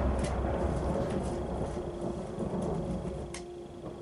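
Low rumbling drone from a TV drama's soundtrack, slowly fading, with a faint steady hum coming in about halfway and a few soft ticks.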